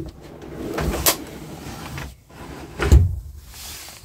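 Plywood drawer being pushed into a cabinet on metal ball-bearing drawer slides: a sliding rattle with a knock about a second in and a heavier knock near three seconds, as the drawer fails to go in properly.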